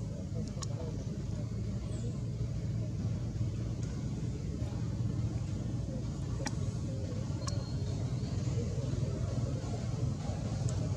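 Steady low background rumble, with a few faint, brief high clicks or chirps over it.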